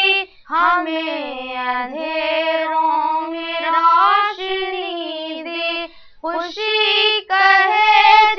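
A single young female voice singing a melodic verse line, with long held notes and a wavering vibrato, breaking for breath about half a second in and again about six seconds in.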